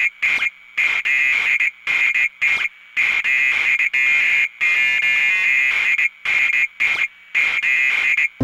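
Experimental electronic music: a high, shrill, alarm-like synthesizer tone chopped on and off in irregular stuttering pulses, with the bass and drums dropped out.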